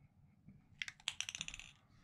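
Aerosol spray paint can giving a faint, quick run of light metallic rattling clicks for under a second, about midway through.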